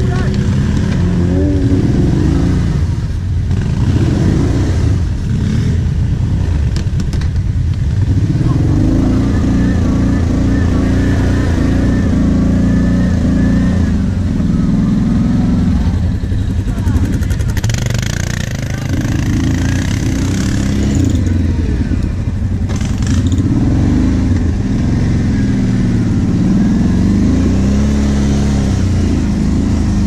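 Quad (ATV) engines running close by, their engine speed rising and falling as the throttle is worked. A few seconds of hissing rush come in just past the middle.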